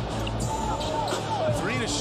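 Basketball being dribbled on a hardwood court, over arena crowd noise and music and a voice.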